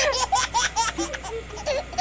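Laughter in quick repeated bursts, about four or five a second.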